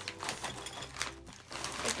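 Flamin' Hot Cheetos being poured from the bag into a glass bowl: an irregular, rapid patter of small clicks as the puffs tumble onto the glass and onto each other.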